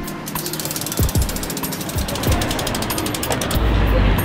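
Bicycle freehub ticking rapidly as the road bike's rear wheel spins freely, the pawls clicking against the ratchet ring, in a fast, even run that stops shortly before the end.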